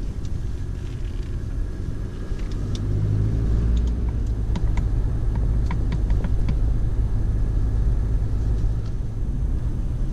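Car driving, heard from inside the cabin: a steady low rumble of engine and tyres that grows louder about three seconds in, with a few faint light ticks scattered through the middle.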